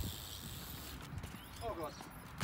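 BMX bike rolling over concrete, a low rumble, with a short voice a little past halfway.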